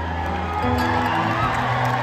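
Live band holding a soft, sustained vamp of long low notes, with the crowd cheering.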